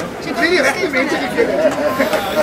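People chatting close by, with more than one voice talking through the whole time.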